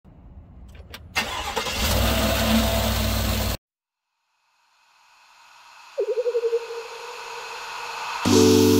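A car engine starting and running with a low rumble, then cutting off abruptly. After a short silence, a rising hiss with a wavering tone fades in.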